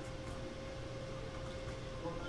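Room tone: a steady background hiss with a faint constant hum, and no distinct event.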